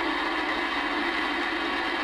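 Galaxy DX-2547 CB radio receiving between transmissions, a steady rush of static from its speaker: band noise from heavy skip on the 11-metre band.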